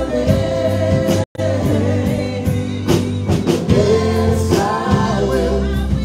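Live worship band: a woman singing lead over keyboard, acoustic guitar and drum kit, holding long sung notes. The sound drops out completely for a split second about a second in.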